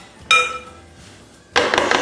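A single ringing clink about a third of a second in. Then, from about a second and a half in, a quick run of sharp knocks as a fluted metal tart tin full of raw cake batter is tapped against a wooden board to settle the batter and level it.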